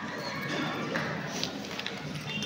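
Indistinct room noise with faint voices in the background and a few light clicks about halfway through.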